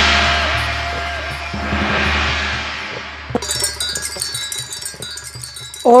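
Electronic keyboard sound effects: a crash-like wash over a deep drone that swells and fades, then a high, shimmering wind-chime sound from about three seconds in.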